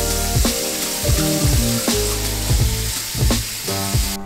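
Kitchen faucet running, a steady hiss of water pouring into a pan in the sink, over background music.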